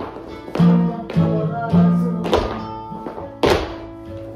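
Flamenco guitar playing a soleá, with dancers' shoes stamping on a wooden floor: two heavy stamps, the second and loudest near the end.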